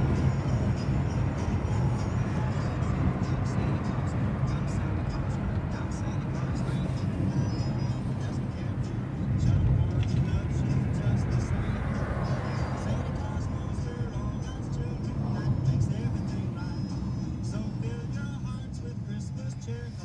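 Steady road and engine noise inside a moving car's cabin, with music from the car radio playing underneath, its notes coming through more clearly near the end.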